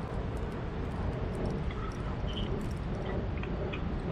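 Baitcasting reel being cranked steadily to bring in a hooked fish: a soft, even gear whir with faint ticks, over a steady low rumble.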